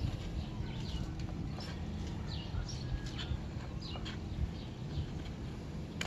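Birds chirping off and on over a low steady background rumble, with a few light clicks of a hand-held wire stripper working a thin wire.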